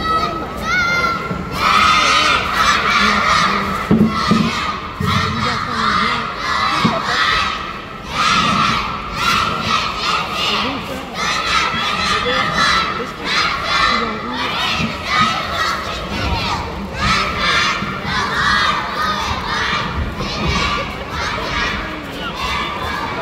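A youth cheer squad shouting a cheer in unison: many girls' voices chanting short rhythmic phrases, about one a second, with brief gaps between them.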